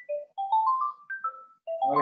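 A phone ringtone playing: short, clear notes climbing in pitch in two quick rising runs, about seven notes a second.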